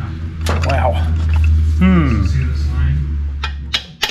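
A man's wordless muttering and straining sounds, with a few sharp metal clinks near the end from tapping a steel pin into a hydraulic jack's pump assembly. A steady low hum runs underneath and stops just before the end.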